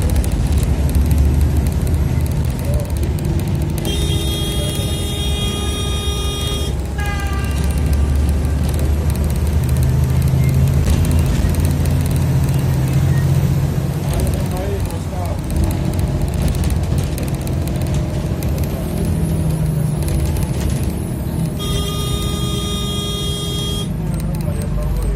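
Steady engine and road rumble heard from inside a moving vehicle, with a vehicle horn sounding twice. The first blast is held for about three seconds, starting about four seconds in, and drops in pitch as it ends. The second lasts about two and a half seconds near the end.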